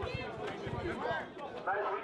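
Crowd chatter and scattered shouts from spectators packed around an outdoor basketball court, with faint knocks in the background.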